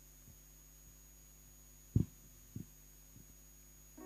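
Quiet room tone with a faint steady hum, broken by a few dull low thumps: a clear one about two seconds in, then two weaker ones over the next second.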